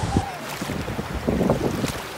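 Wind buffeting the phone's microphone over shallow seawater washing at the shore, with a couple of brief splashes, one about half a second in and one near the end.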